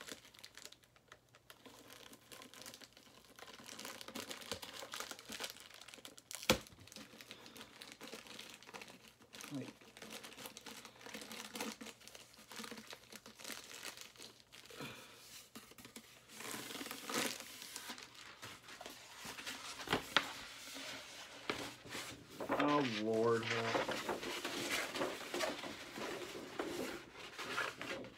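Plastic packaging crinkling and tearing as it is pulled off by hand, in irregular rustles, with a couple of sharp clicks along the way.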